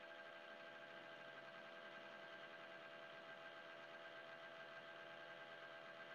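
Near silence: faint, steady hum of room tone.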